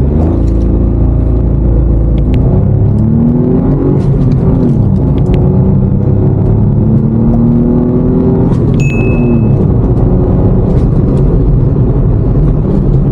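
2024 Maruti Suzuki Swift's Z-series three-cylinder petrol engine accelerating hard from a start. Its pitch climbs, drops back and climbs again several times as it shifts up through the gears.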